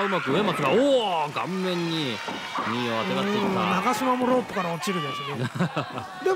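Voices talking or calling out almost without pause, fairly high-pitched; no impacts or other sounds stand out.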